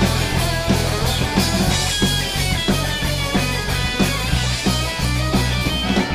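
Garage rock band playing live: electric guitars, bass guitar and drum kit in an instrumental passage with no vocals, over a steady driving beat.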